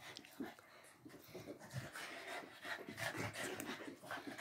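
French bulldog breathing hard as it wrestles and tugs at a toy, with faint irregular scuffling of bodies and clothes on carpet.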